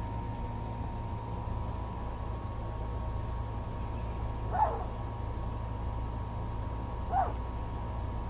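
Two brief, high squeaks from one-week-old miniature Bordoodle puppies, about two and a half seconds apart, the first a little louder, over a steady low hum.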